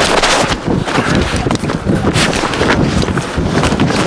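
Handheld camcorder microphone being jostled and carried quickly, with wind buffeting it: a rough, continuous rustle and rumble broken by many small knocks.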